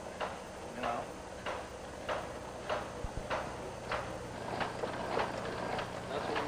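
Thornson inertial propulsion drive running, its mechanism knocking in a steady rhythm of about three clacks every two seconds over a low steady hum.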